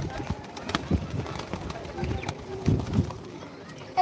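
Pigeons moving about close by, with scattered sharp clicks and a few low thuds.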